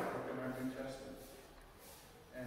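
A man speaking, his voice trailing off into a short pause about a second in.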